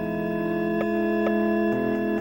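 Organ music: slow, sustained chords held steady, changing to a new chord near the end.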